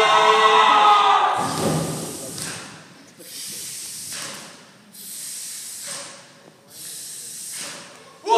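Male haka performers shouting a chant together, which breaks off about a second and a half in with a thud. Then come four long, forceful hissing exhalations in unison, each about a second long, with short gaps between them.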